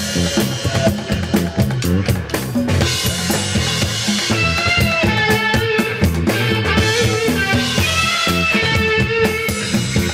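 Live reggae band playing, led by drum kit with a steady bass drum and snare over a bass line. Held higher notes from another instrument come in about three seconds in.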